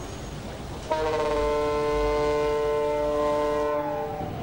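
A multi-tone horn sounds one long steady chord starting about a second in, over a low rumble. Near the end its pitch begins to fall, as when a horn passes by.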